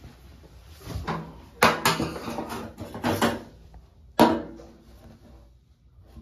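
A few sharp knocks and clatters of a hand tool against the bathtub, each with a short ring; the loudest come a little over a second in and about four seconds in.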